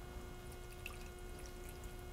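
White wine being poured from a glass bottle into a skillet of browned goose roasts and onions: a faint, steady trickle of liquid.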